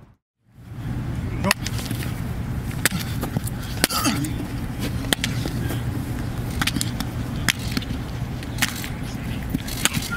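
Indoor stadium broadcast ambience: a steady low hum with scattered sharp clicks, after a brief dropout at the start, and a short laugh about four seconds in.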